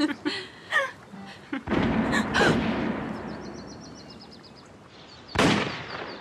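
Two shotgun shots about four seconds apart, each a sudden loud report. The first rolls away in a long echo lasting about three seconds.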